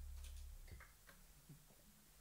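Near silence as the band's playing ends: a low held note fades and stops about half a second in, followed by a few faint ticks.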